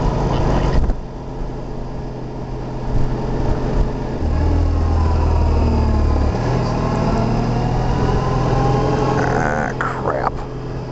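Suzuki Burgman maxi-scooter engine running while riding, its note dipping and then rising again a few seconds in. Wind rumbles on the microphone for a couple of seconds around the middle.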